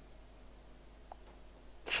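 Quiet room tone in a pause in a man's speech, with a faint tick about halfway through. Near the end a short, breathy burst as he takes a breath and starts speaking again.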